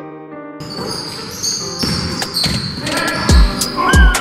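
Live basketball game audio in a sports hall: a ball bouncing on the court floor, with two heavy bounces near the end, among shoe squeaks and knocks. A short stretch of piano music cuts out abruptly about half a second in.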